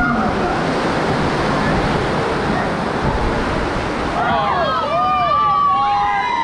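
Churning whitewater of a river rapids raft ride, a loud, steady rush of water. From about four seconds in, several voices cry out over it in high, sliding tones.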